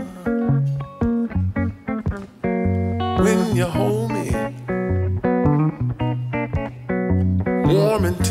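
Blues song: picked guitar over a walking bass line, with a gliding melodic phrase about three seconds in and again near the end.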